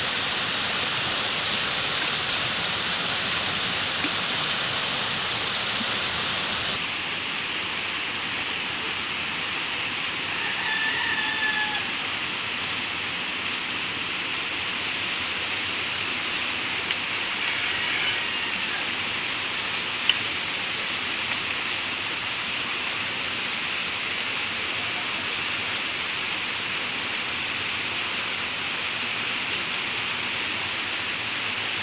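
Brown floodwater from a river swollen by heavy rain rushes steadily over a low concrete weir. A rooster crows faintly about ten seconds in and again a little later, and there is one sharp click about twenty seconds in.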